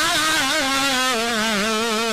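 A man's voice singing a long, held melodic line into a microphone, wavering with vibrato and dropping to a lower note about halfway through.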